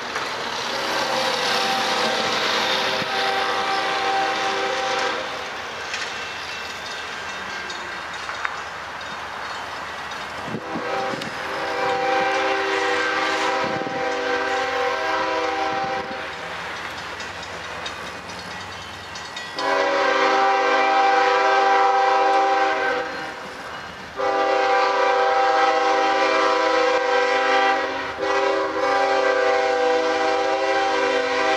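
Diesel freight locomotive's air horn sounding a chord of several notes in four long blasts for a grade crossing as the train approaches; the last two blasts come almost back to back. The train's running noise is heard between blasts.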